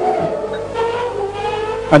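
Formula One racing engine droning at steady high revs, its pitch sagging slightly in the first half second and then holding.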